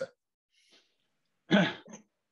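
Near silence, then about a second and a half in a man clears his throat once, briefly and loudly.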